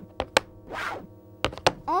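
Cartoon sound effects: two soft whooshes and four short, sharp clicks over a quiet, steady music bed.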